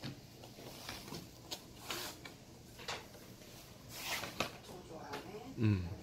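Faint, scattered soft knocks and rustles of a toddler's hands handling and turning the stiff cardboard pages of a board book, with a short hummed "mm" near the end.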